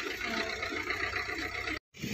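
A Suzuki hatchback's engine running low and steady as the car pulls away slowly. The sound cuts off abruptly near the end.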